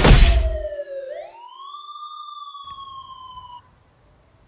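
A loud crash at the start, then a siren wailing: its pitch slides down, rises again about a second in and slowly sinks. It cuts off suddenly shortly before the end.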